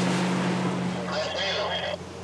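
A motorboat's engine running with a steady low hum under loud rushing and splashing water from the hull's wake. A voice is heard briefly near the end.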